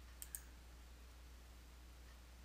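Two quick computer mouse clicks a quarter-second in, over near silence.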